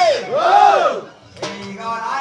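A man's amplified cry through a microphone, its pitch swinging up and down in a few broad arcs and breaking off about a second in. A sharp click follows, and a held note starts near the end.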